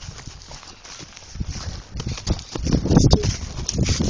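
Handling noise from a phone: fingers rubbing and knocking over its microphone as it is carried about, an irregular rumbling scrape that grows louder about halfway in.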